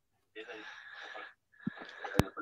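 A faint, breathy voice lasting about a second, then a soft tap near the end.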